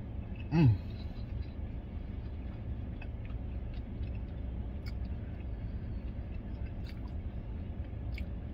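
Closed-mouth chewing of a bite of fried chicken sandwich, with a few faint small clicks, over the steady low rumble of a parked vehicle idling with its air conditioning on, heard inside the cabin. A short hummed "mm" comes about half a second in.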